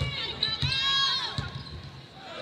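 Basketball dribbled on a hardwood court, a few bounces, with a high sneaker squeak in the middle.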